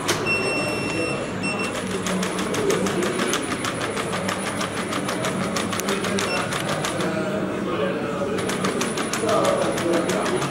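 Unitree Go1 robot dog's electric joint motors whining high for about the first second and a half as it gets up. Then rapid, even ticking from the robot as it stands and steps on the tile floor, pausing briefly near the end, over indistinct background voices.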